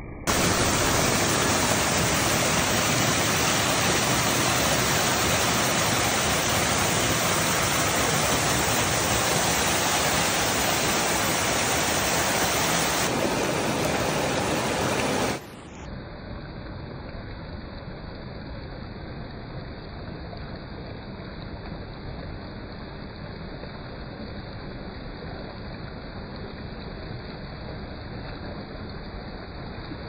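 Creek water rushing and splashing over rocks in a small cascade, heard close up as a loud, steady rush. About halfway through it drops suddenly to a quieter, duller rush of water.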